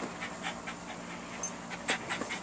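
A dog panting softly, with a few faint clicks.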